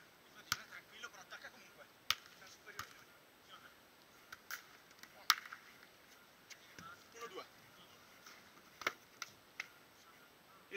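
A volleyball being struck by players' hands and arms during a beach-volleyball rally: about half a dozen sharp, separate slaps at irregular intervals, the loudest about five seconds in. Faint voices call out now and then.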